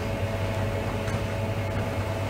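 Room tone in a pause between speech: a steady low hum with a couple of faint steady higher tones over a light hiss.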